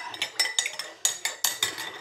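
Small hard containers knocking and clinking together in a quick, irregular run of about eight clicks, as makeup products are rummaged through.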